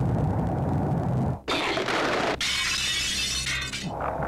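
Movie-trailer sound effects: a low rumble for about the first second and a half, then, after a brief break, a loud, hissing crash-like noise that lasts about two seconds.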